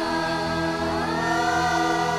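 A mixed church choir sings a Telugu Christian devotional song to electronic keyboard accompaniment. The voices hold sustained notes and rise in pitch about a second in.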